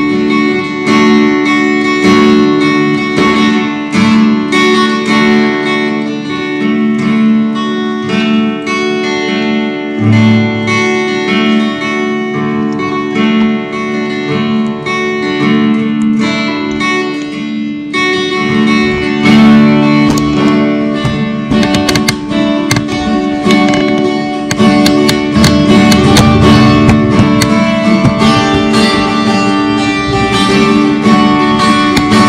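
Acoustic guitar strummed in chords, accompanying a worship song; the strumming grows fuller and louder about two-thirds of the way in.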